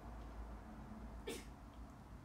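Quiet room with a steady low hum and one short mouth sound about a second in, from a person chewing food.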